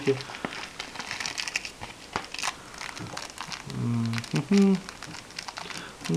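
Packaging crinkling and rustling in the hands as stud earrings are taken from a small padded mailer and a clear plastic bag, a run of quick crackles over the first three seconds or so. A brief bit of a man's voice comes about two thirds of the way through.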